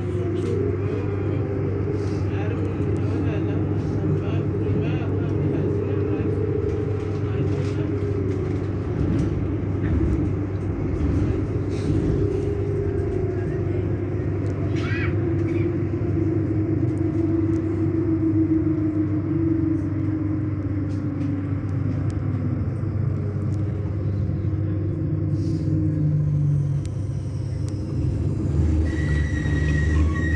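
Bombardier Flexity Outlook tram standing at a stop, giving off a steady low electrical hum with a slowly wavering mid-pitched tone. A steady high tone begins near the end.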